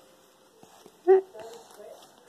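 Quiet room, then one short spoken syllable about a second in, followed by faint voice sounds.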